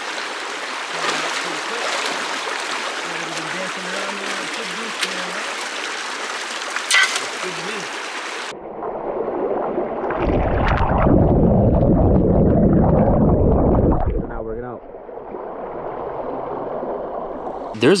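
Shallow creek water rushing and splashing. About eight seconds in, the sound turns muffled and low, a heavy rush of water heard right at the waterline as the current runs through a sluice box. It eases off near the end.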